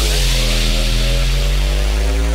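Dubstep: a single long, distorted synth bass note held on its own, its pitch bending slowly, over a deep sub-bass, with no drums.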